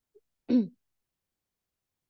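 A single brief throat clearing by a person, about half a second in, short and dropping slightly in pitch.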